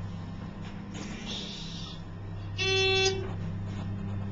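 An elevator car's electronic signal tone: a single beep about half a second long, a little over halfway through, over a steady low hum.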